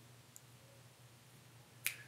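Near silence: faint room tone, broken by one short, sharp click a little before the end.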